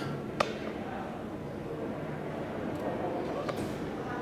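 Steady background hum of a subway station's interior, with one sharp click about half a second in and a fainter tick near the end.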